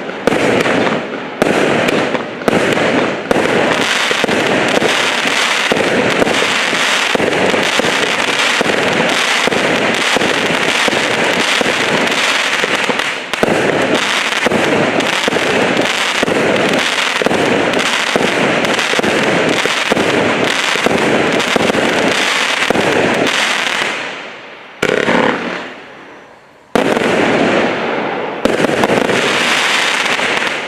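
A 200-shot consumer fireworks cake with 0.8-inch tubes firing a rapid, continuous barrage of launches and bursting breaks. The firing thins out and nearly stops for a couple of seconds near the end, then picks up again.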